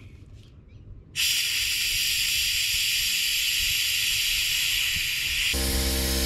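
Vacuum brake bleeder sucking old brake fluid out of the master-cylinder reservoir through a hose: a steady hiss that starts suddenly about a second in. Near the end the hiss weakens and a low, steady mechanical hum joins it.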